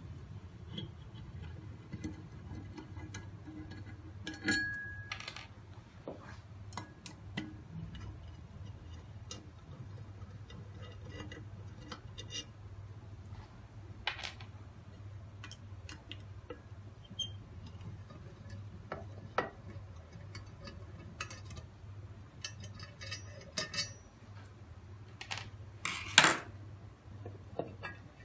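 Scattered small metallic clicks and taps of a hex key turning screws and of screws being handled on the laser head's aluminium housing, over a low steady hum. A louder clatter comes near the end as the cover is worked loose.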